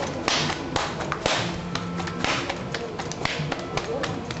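Soft slaps of raw naan dough being slapped and stretched between a cook's palms, a slap about once a second with lighter pats in between.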